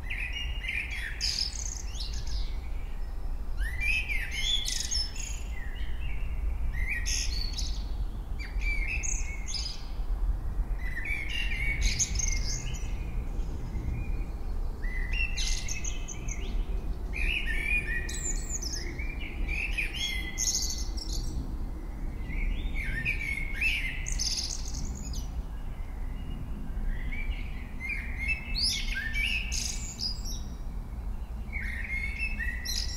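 Small birds chirping and singing in short, twittering phrases that recur every second or two, over a steady low hum.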